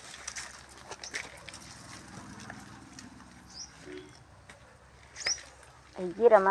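Faint scattered clicks and rustles of dry sticks and twigs being shifted by hand, with two short high chirps, about three and a half and five seconds in.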